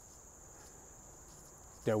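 Faint, steady high-pitched chirring of insects in the trees, unbroken through the pause; a man's voice comes in at the very end.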